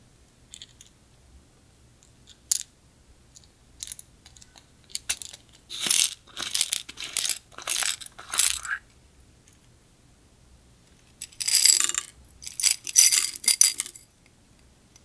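Clear slime being worked by hand, crackling and clicking in short bursts: a few scattered clicks, then two runs of sticky crackles with a pause of a couple of seconds between them.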